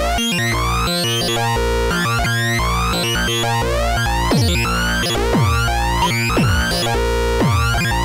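Eurorack modular synthesizer built around a Schlappi Engineering Three Body oscillator under modulation, playing a harsh, buzzy, rhythmic electronic pattern with repeating rising sweeps. From about four seconds in, a falling pitch drop sounds roughly once a second.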